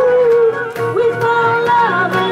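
Live pop band playing amplified music: a singer holds one long note over keyboard, guitars and drums, its pitch sliding down near the end.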